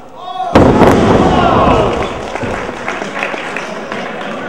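A sudden loud impact about half a second in, then a wrestling crowd breaking into loud cheering and shouting that slowly eases off.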